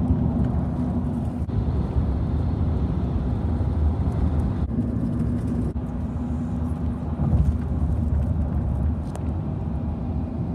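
Road noise heard from inside a moving car: a steady low rumble of tyres and engine, with a faint hum that fades in and out.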